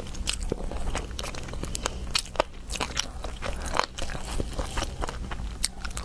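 Close-miked eating of seafood: wet sucking and chewing with many sharp crackles and crunches as meat is pulled from the shell.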